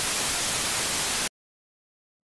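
Television static: a steady, full-range hiss that cuts off suddenly just over a second in, leaving dead silence.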